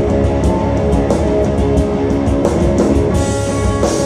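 Live thrashing black metal band playing at full volume: distorted electric guitars over a drum kit, with frequent drum hits.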